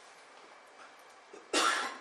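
A person coughs once, sharply, about a second and a half in, over faint room noise.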